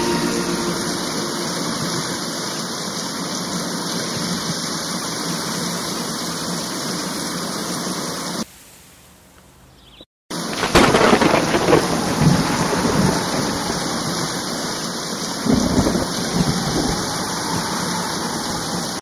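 Thunderstorm sound: steady rain hiss with rolling thunder. It drops low about halfway through, breaks off for a moment, then returns louder with two heavy rumbles of thunder.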